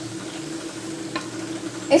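Potato snacks deep-frying in a pan of hot oil, a steady sizzle, with a single light click about a second in.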